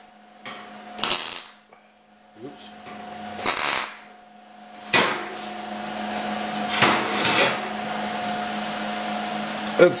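MIG welder (ESAB Rebel 215ic) tack-welding thin 16-gauge stainless steel exhaust tubing with ER70S-6 wire: four short bursts of arc crackle, a second or less each, spaced a couple of seconds apart, with a steady hum between them.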